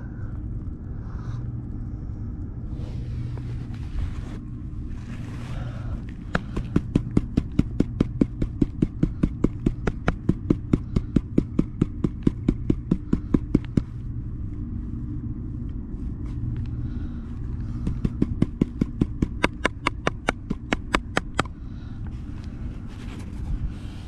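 Rapid tapping on a plastic gold pan holding water, about four taps a second, in two runs: a long one from about six seconds in and a shorter one near the end. This settles the fine flour gold to the bottom of the pan. A small engine runs steadily underneath.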